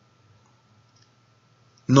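Near silence with a faint steady high hum and a few tiny faint clicks, then a man's voice resumes in Spanish just before the end.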